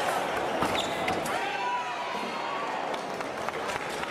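Fencers' footwork on the piste: shoes squeaking in short rising and falling glides, with a few sharp clicks of steps and blades in the first second, over the voices of a large hall.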